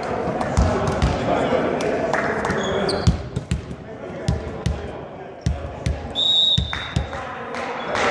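Volleyball bounced on a hardwood sports-hall floor, a dull thud every half-second to second, with players' voices echoing in the hall over the first three seconds. A short, high, steady whistle sounds about six seconds in.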